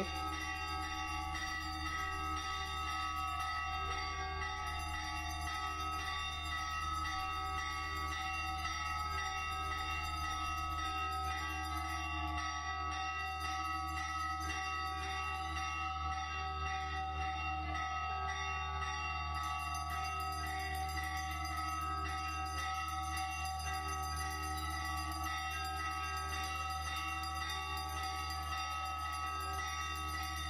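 Steady ringing of bell-like chimes: several pitches held together without a break, over a soft low pulse about once a second.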